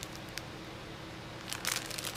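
Quiet room tone with a single faint click, then a short burst of plastic packaging crinkling and rustling about a second and a half in as the items are handled.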